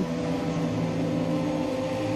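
Sustained ambient drone from the film's score: several low held tones with a hum underneath, steady, with a lower layer swelling in about halfway through.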